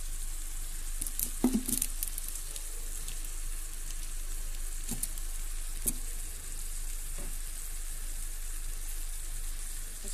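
Chopped greens sizzling steadily in a nonstick frying pan, with a few short knocks and scrapes of a wooden spoon against the pan, the loudest about one and a half seconds in.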